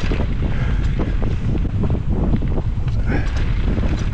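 Wind buffeting the microphone on a mountain bike moving fast down a dirt trail, with a steady run of knocks and rattles from the bike and its tyres over the rough ground.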